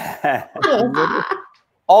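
Several people laughing, mixed with a short spoken 'yeah', heard through video-call microphones. The laughter stops about a second and a half in.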